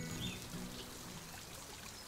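Faint sound effect of light rain dripping and trickling, as a steady soft hiss. The last held notes of a music cue die away at the very start.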